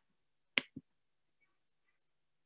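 A single computer mouse click advancing a presentation slide: a sharp click, then a softer, duller knock a fifth of a second later, in an otherwise quiet pause.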